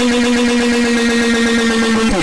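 A loud scream held on one steady pitch.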